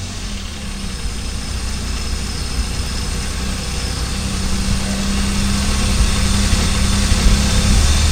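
Car engine running steadily with road hiss, growing gradually louder; a steady hum note joins about halfway through.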